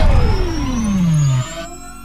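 Synthesised intro sound effect: a deep boom rumbling on under a long falling tone that glides down and stops about a second and a half in, with a faint rising whistle above, fading out near the end.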